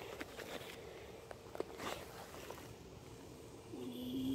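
Faint rustling and a few light crackles of dry pine straw and grass underfoot and under hand, over a quiet outdoor background with a faint steady hum.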